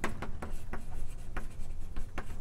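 Writing on a board during a lecture: a string of short, irregular taps and strokes as the lecturer writes or draws.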